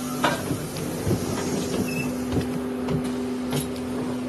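Ride noise inside a moving bus: a steady engine hum with many small irregular rattles and knocks from the cabin.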